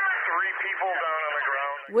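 Police dispatch radio traffic heard through a scanner feed: a voice over a narrow-band two-way radio, thin and tinny. It cuts off just before the end.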